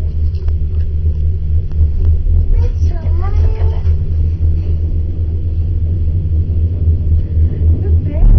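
Steady low rumble inside a moving gondola cabin, with a few light clicks early and a young child's voice vocalizing briefly about three seconds in.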